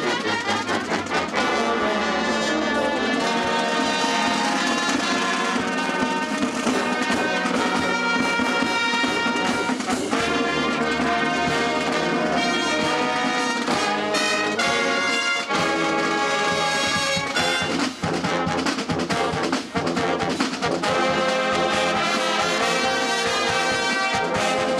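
A marching show band's brass section, trumpets and sousaphones among them, playing full sustained chords as it moves across the field.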